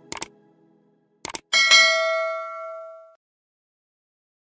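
Subscribe-button sound effect: two quick clicks, another pair of clicks about a second later, then a bright bell ding that rings and fades away over about a second and a half.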